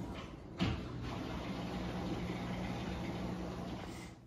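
Steady background noise with a low hum, broken once just over half a second in by a sharp thump.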